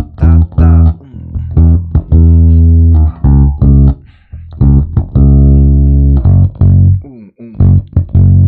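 Electric bass guitar playing a funk line: short, clipped plucked notes mixed with longer held ones, with brief gaps between phrases.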